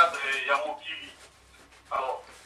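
A person talking, with a short pause in the second half.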